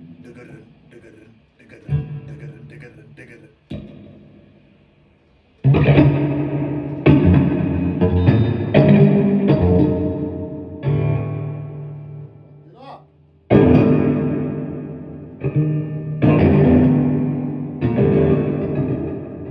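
Electric guitar played through an amplifier: a few quiet picked notes, then from about six seconds in loud chords, each ringing out and fading, with a short break near the middle before the chords start again.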